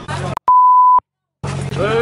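A censor bleep: one steady, high, pure beep about half a second long, the loudest thing here, cut into the voices and followed by a brief drop to dead silence before the voices come back.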